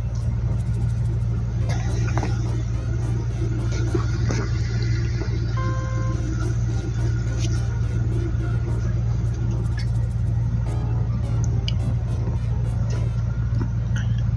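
A steady low rumble under faint background music, with a brief high beep about six seconds in.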